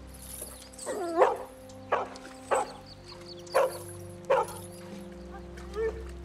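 A dog crying out: one drawn-out yelp about a second in, then about four short sharp barks spaced roughly a second apart. Background music with steady held notes plays underneath.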